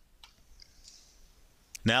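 A single computer mouse click about a quarter of a second in, closing a window, followed by faint room tone.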